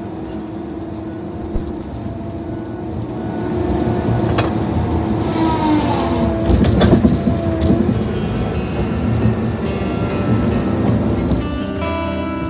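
Tigercat LX870D feller buncher heard from inside its cab: engine, hydraulics and spinning disc saw running with a steady hum. The sound gets louder about four seconds in as the saw head is worked into the ground, with squeals and a burst of knocks from the head scraping dirt and debris. Music fades in near the end.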